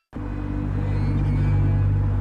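A steady low rumbling drone that starts abruptly right after a brief silence, with a slowly wavering tone above it.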